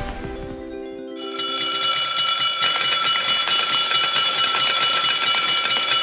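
Electronic slot-game win sound: a held chord fades, and about a second in a loud, continuous bright bell-like ringing with rapid ticking begins and carries on.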